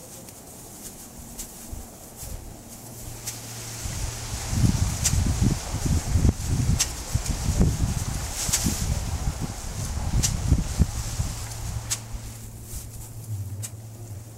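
Thin plastic bag crinkling and rustling in the hands as it is stuffed over the exhaust pipe of a small engine running on compressed air, loudest and most irregular from about four to eleven seconds in. A steady low hum runs underneath.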